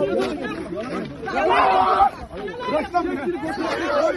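Several people's voices talking over one another in overlapping chatter.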